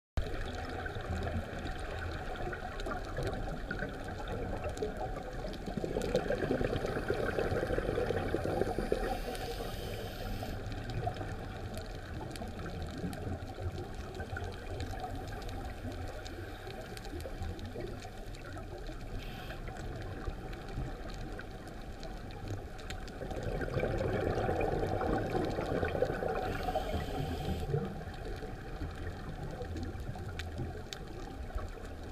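Scuba diver's exhaled bubbles heard underwater through the camera housing: two bouts of bubbling, about a third of the way in and again near the end, over a steady underwater hiss.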